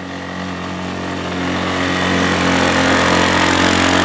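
ATV engine running under load at steady revs while pulling a weight-transfer sled through mud, growing steadily louder.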